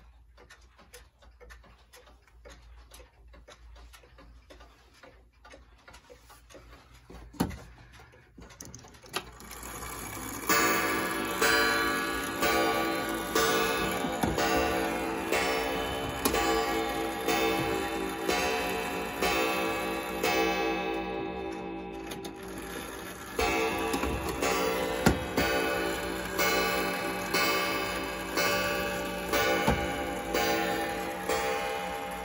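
Mechanical pendulum clocks ticking faintly. About a third of the way in, a wall clock's chime starts, a string of struck, ringing notes each dying away before the next. A new chime sequence begins about three quarters of the way through.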